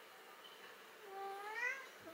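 A domestic cat gives one meow, a little under a second long, that rises in pitch, starting about a second in.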